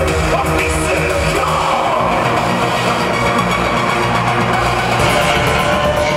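Loud live band music played through a concert PA, with keyboards and a heavy electronic bass beat, heard from within the audience. The bass pattern changes about two seconds in.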